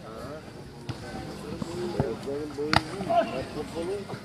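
Players calling out to each other across a five-a-side football pitch, with three sharp thuds of the ball being kicked; the last, about two-thirds of the way in, is the loudest.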